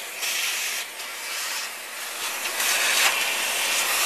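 Vacuum cleaner running, its hose nozzle sucking loose dirt and debris out of the underside of a vacuum power nozzle. The suction noise rises and falls as the nozzle is moved about the housing.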